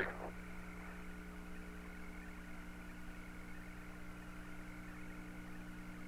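Steady electrical hum with a low hiss from the open Apollo 17 air-to-ground radio and tape channel, with no voices on the line.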